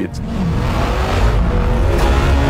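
Bugatti Tourbillon's naturally aspirated V16 engine revving: the sound swells over the first half second and the note climbs in pitch toward the end.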